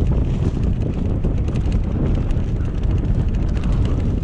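Mountain bike riding down a dirt singletrack: a steady low rumble of wind on the microphone and tyres on the trail, with a constant stream of quick rattles and clicks from the bike over the rough ground.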